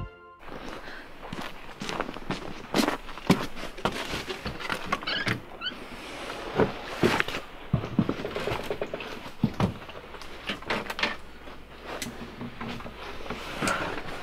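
Irregular knocks and thumps, one or two a second, from footsteps, a door and things being handled.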